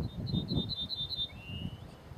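A male yellowhammer singing its song: a quick run of about seven short, high repeated notes, then one longer, lower drawn-out closing note. A low, irregular rumble of noise lies underneath.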